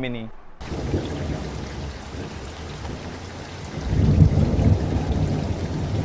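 Steady rain with rolling thunder, cutting in suddenly about half a second in; the low thunder rumble swells up about four seconds in.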